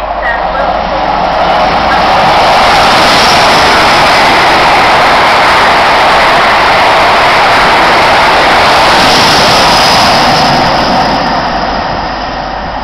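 An HST (InterCity 125) led by a Class 43 diesel power car passes through a station at speed. A loud rush of diesel engine and wheel-on-rail noise builds over the first couple of seconds, holds steady as the coaches go by, and fades near the end as the train draws away.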